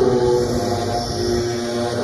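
Experimental electronic music: several held synthesizer tones over a low, rumbling drone.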